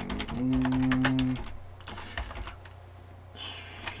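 Computer keyboard typing: a quick run of keystrokes in the first two and a half seconds as a search query is typed. Over the first keystrokes a man holds a drawn-out hesitant "euh" for about a second.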